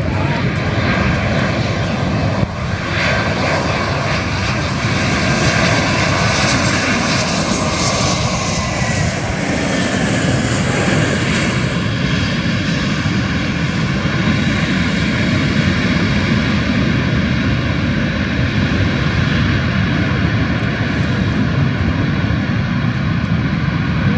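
Airbus A321 jet engines landing: loud, steady jet noise throughout, with a whine that falls in pitch as the airliner passes, about halfway through.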